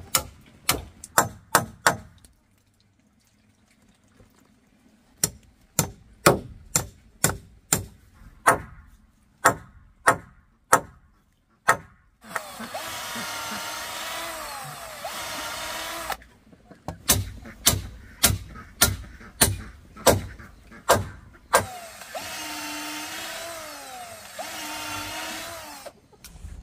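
Runs of sharp blows, about two a second, on the wood and bamboo of a bridge under construction, alternating twice with a power drill running for about four seconds at a time, its whine dipping and rising in pitch.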